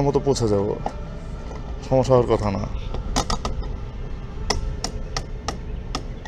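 A car's fuel filler cap being turned by hand, giving a series of sharp clicks, most of them in the second half.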